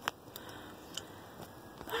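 A single sharp click, then a few faint scattered ticks over low, even background noise.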